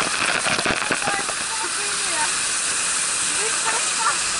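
Water pouring and spraying down from a water play structure, a steady hiss of falling water with splashing strokes in the first second. Voices call faintly in the background.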